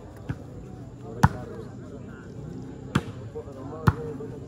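A volleyball being struck by hand during a rally: four sharp hits, the loudest about a second in, over a steady babble of crowd voices.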